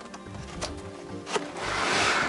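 Background music over the handling of a cardboard box and its clear plastic packaging: a couple of sharp clicks, then a rustle of plastic and cardboard that swells near the end as the tray slides out of the box.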